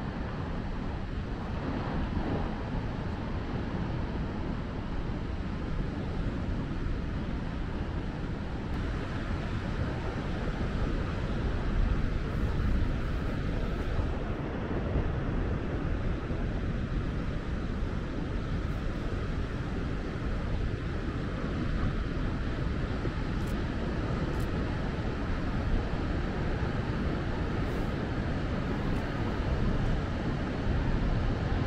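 Heavy Atlantic surf breaking and washing onto a sandy beach, a steady, even rumble of waves with wind noise on the microphone.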